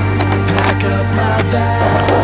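Background music with a steady bass line, over a skateboard's sharp clacks on concrete: the board's tail popping and the wheels landing during a flatground flip trick.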